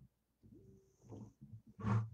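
Acoustic guitar played quietly, with scattered soft low notes and a louder strum just before the end, as the lead-in to a hymn chorus.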